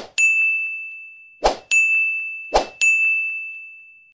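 Three animated button-pop sound effects, about 1.3 s apart. Each is a short whoosh-like hit followed by a bright ding that rings and slowly fades.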